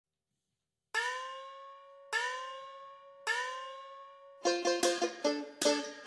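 Banjo opening the tune: three single plucked notes, each left to ring out, then quick strummed chords at about four a second starting a little past the middle.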